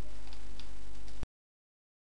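Steady low hum and hiss of background noise with two faint ticks, cutting off abruptly to dead silence a little over a second in.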